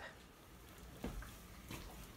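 Quiet kitchen room tone with a faint low knock about halfway through.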